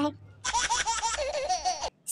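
A short burst of high-pitched giggling laughter, a laugh clip dropped in after a joke, starting about half a second in and cutting off suddenly near the end.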